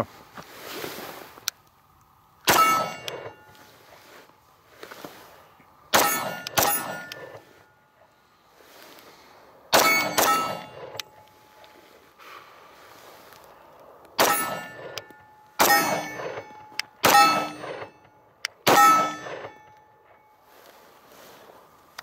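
Beretta PX4 Storm pistol fired nine times at an unhurried pace, mostly single shots with two quick pairs. Most shots are followed by a ringing clang from a struck steel target.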